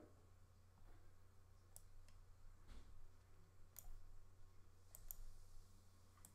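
Near silence: a low steady hum with about five faint, sharp clicks scattered through it.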